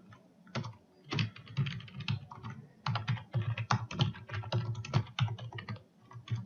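Typing on a computer keyboard: uneven runs of keystroke clicks, with a brief lull near the start.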